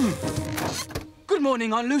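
A rush of noise with a falling tone, then a drawn-out voice call that wavers in pitch near the end, over film music.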